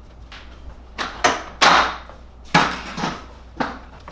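A series of sharp knocks and clatters, about six in all and uneven in spacing, the loudest just before halfway, with short rattling decays: things being handled and set down on shop shelves and benches while someone walks about a workshop. A low steady hum lies underneath.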